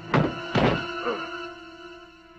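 Two heavy thuds about half a second apart, a body slamming into a wall and dropping to the ground in a film fight, over a soundtrack holding a sustained note.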